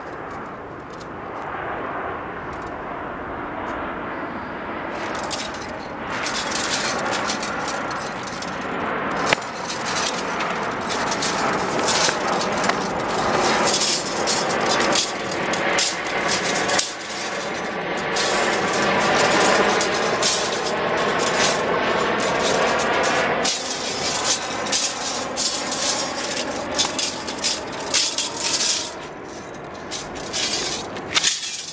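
A single sabre being swung through a kung fu form: the blade swishing and its large cloth flag flapping and snapping, with many sharp cracks and scuffs from quick footwork on asphalt. Under it is a steady rushing noise that grows louder in the first few seconds and stays loud.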